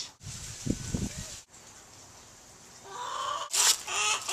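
Hens clucking, a few low clucks about a second in, then louder calls near the end.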